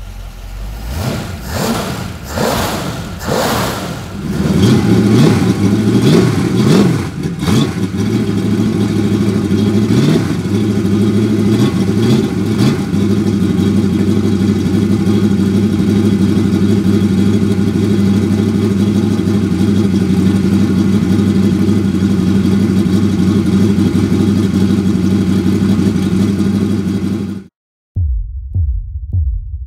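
Freshly rebuilt Chevrolet 283 small-block V-8 on an engine run stand, revved with a few quick throttle blips and then running steadily during its warm-up heat cycle after the rebuild. The builder hears a slight cam lump in its run. The sound cuts off suddenly near the end.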